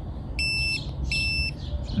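Roffie TC20 dog training collar receiver in beep mode, giving two short, high, steady electronic beeps about three-quarters of a second apart. Each beep answers a press of the remote's beep button on channel 1, a sign that the collar is paired and receiving.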